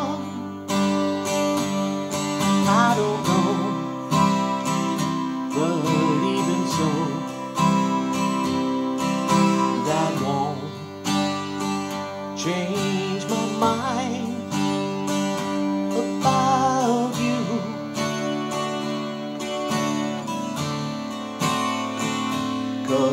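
A man singing a slow song, accompanying himself on a strummed acoustic guitar, the voice coming in phrases between stretches of guitar.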